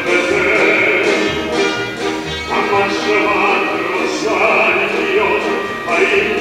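Live performance of a Polish folk song: a male soloist singing in a trained, operatic style, backed by a mixed choir and orchestra, with sustained held notes.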